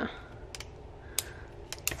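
Retractable ballpoint pen being handled, giving four sharp, separate clicks spread over two seconds.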